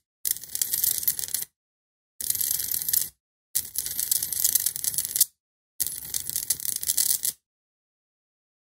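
High-voltage discharge crackling from electrodes fed by a flyback transformer, in four bursts of about a second or more each, stopping dead between them and after the last.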